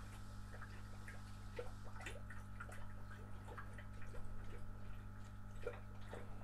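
Faint, irregular splashing and dripping of water from the air-lift pipes of a small aerated wastewater treatment plant model as it pumps during the sludge-removal step. The air compressor's steady low hum runs underneath.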